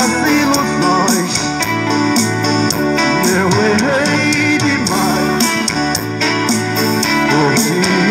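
Male street singer singing through a microphone and loudspeaker over an amplified backing track with guitar and a steady beat.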